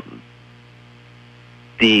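A low, steady electrical hum, heard in a pause between a man's words; his speech starts again near the end.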